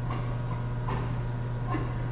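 Steady low hum of a vibrating sample magnetometer running its automatic calibration, with faint regular ticks a little under once a second.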